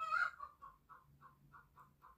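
Domestic chicken clucking faintly in the background: a louder call at the start, then a steady run of short clucks, about four or five a second.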